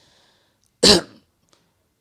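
A man's single short throat-clearing cough at the microphone, one sharp burst about a second in.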